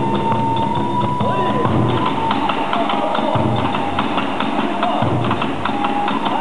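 Kagura hayashi music: a bamboo transverse flute (fue) holds a high note over a quick, steady beat of drum and small hand cymbals (tebyōshi). The flute drops out after about two seconds and comes back in near the end while the percussion keeps going.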